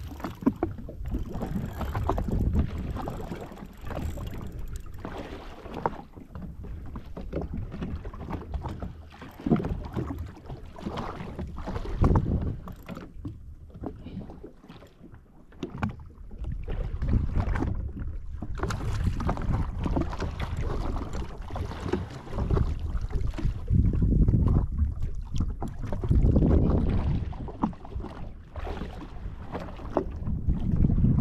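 Wind buffeting the camera microphone and small waves slapping the hull of a drifting jet ski, as an uneven rumble that swells and eases with a few short knocks.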